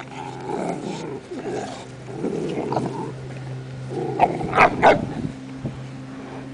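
Bulldog and small dogs growling as they play-fight, with three sharp barks close together between about four and five seconds in.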